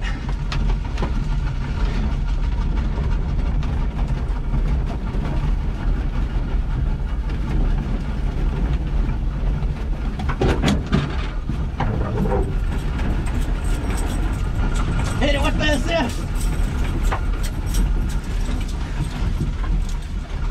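Old Datsun 620 pickup rolling over rough grassy ground, a steady low rumble with rattles and knocks from the body. A few louder knocks come about halfway through, and a short vocal sound is heard about three quarters through.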